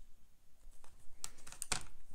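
Light handling noises: a few quick clicks and taps in the second half as the paintbrush is lifted off the painting and hands move over the table.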